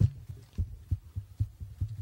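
Dull low thumps and knocks, irregular at about two or three a second, from people moving about and handling things on a hollow wooden stage.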